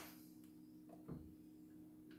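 Near silence: a faint steady hum with two soft clicks, about half a second and a second in.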